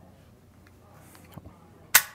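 Toggle-locked breech of a 1907-trials .45 Knoble pistol tapped shut and snapping into battery near the end: one sharp metallic click, after a couple of faint clicks of the toggle being handled.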